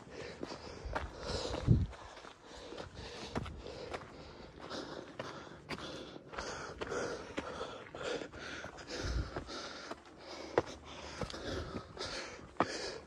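Footsteps crunching on a rocky dirt trail, with a hiker's heavy breathing from the uphill climb. There are a couple of low thumps, about two seconds in and again near nine seconds.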